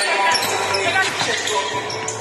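Basketball bouncing on a hardwood gym floor, a few sharp bounces, with voices going on behind.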